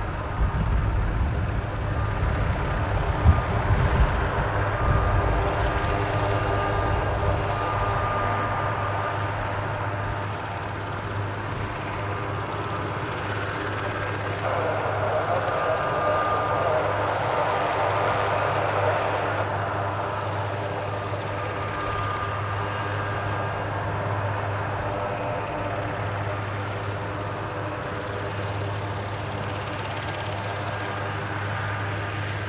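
Eurocopter HM-3 Cougar twin-turbine military helicopter running on the ground with its main rotor turning: a steady turbine whine over a low hum, with a heavier rumble in the first several seconds.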